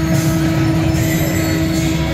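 Float's loudspeaker soundtrack playing a loud, sustained droning music passage: steady held tones over a rumbling low end.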